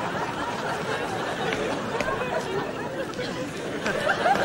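Studio audience laughing and chattering, with a few short sharp clicks.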